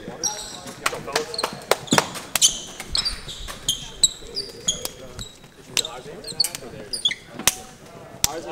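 Basketballs bouncing on a hardwood gym floor, a quick irregular run of sharp thuds, mixed with short high-pitched sneaker squeaks and indistinct voices.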